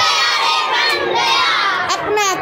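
A group of children shouting and cheering together, many voices at once.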